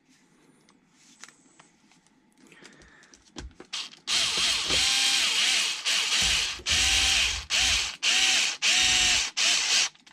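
Cordless electric screwdriver driving a screw into an RC truck's front end. About four seconds in, its motor runs for about two seconds, then goes in about five shorter bursts as the screw is run home. Before that, only faint clicks of small parts being handled.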